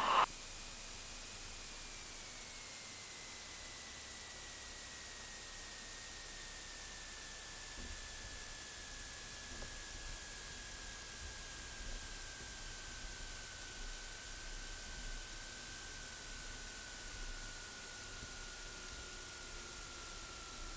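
Steady hiss of cockpit noise in a Piper PA-46 on its landing rollout, with a faint thin whine that slides slowly and evenly lower in pitch as the aircraft slows.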